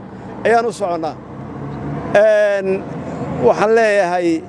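A man speaking in short phrases with brief pauses between them, over a steady low background noise.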